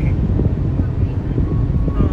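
Steady low rumble of road and engine noise inside a car cabin while driving through a road tunnel.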